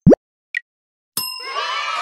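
Logo-intro sound effects: a very short, loud rising swoosh, a brief high blip half a second later, then a bright ringing chime-like hit about a second in that leads into music.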